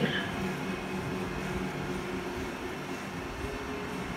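A steady low mechanical hum with a few faint even tones in it.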